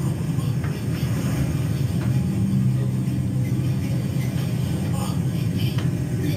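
Steady low rumble of a vehicle on the road in a film soundtrack, played back through auditorium speakers.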